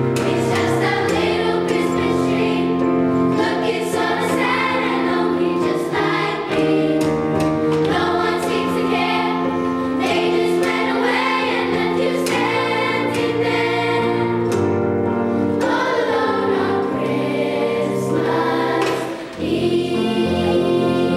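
Fifth-grade children's choir singing, holding long notes over a low instrumental accompaniment, with a brief drop in level near the end.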